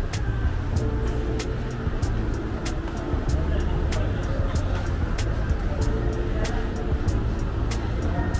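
Shopping-mall ambience: background music and indistinct voices over a steady low rumble, with short sharp clicks about two or three times a second.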